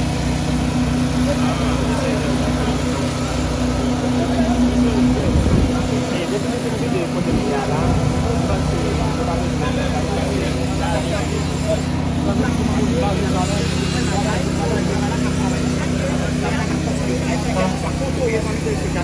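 A heavy machine's engine running steadily at a constant note, which wavers briefly about five seconds in, with several people talking over it.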